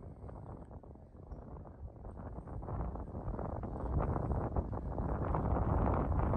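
Wind rumbling on the microphone of a camera moving along with the rider, growing louder in the second half.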